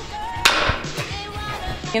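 A hockey stick striking a puck on a concrete floor: one sharp crack about half a second in, then a smaller knock about a second in.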